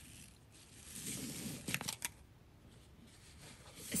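Fabric ribbon rustling and sliding against a cardboard box as it is untied and pulled loose, a soft swish about a second in that ends in a few light clicks.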